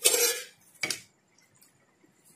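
Knife chopping watermelon chunks in a stainless steel bowl, the blade striking through the wet fruit onto the bowl: two strokes about a second apart, the first longer and louder.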